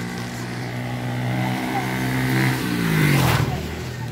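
A motor vehicle passes close by. Its engine note grows steadily louder, is loudest about three seconds in, and drops in pitch as it goes past.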